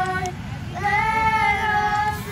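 A woman and children singing a gospel song together: one long held note ends just after the start and a new long note begins about a second in, over a low steady background rush.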